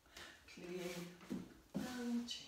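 A voice drawing out a word, a hiss like an "s" and then a long held vowel, followed by the start of another word near the end: the teacher calling the step in time with the movement.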